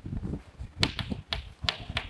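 Chalk writing on a chalkboard: the stick taps and scratches against the board, making several sharp clicks in the second half.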